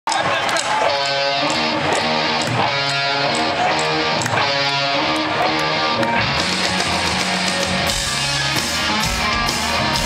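Rock band playing live, heard from the crowd: an electric guitar riff over drums with a steady beat. About six seconds in, cymbals come in and the sound fills out, with heavy kick-drum hits soon after.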